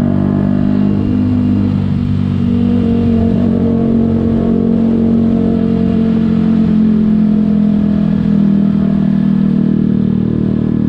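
Yamaha YZF-R125's 125 cc single-cylinder four-stroke engine running at a steady pitch while the bike is ridden, heard from on the bike.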